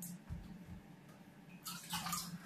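Faint water dripping and trickling from a wet aquarium-filter basket of ceramic rings into a bathtub, with a short louder splash near the end.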